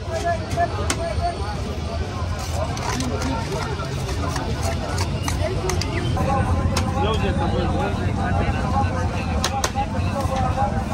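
Busy street-stall ambience: people talking in the background over a steady low rumble of street traffic, with a few sharp clinks of china plates and metal spoons being handled.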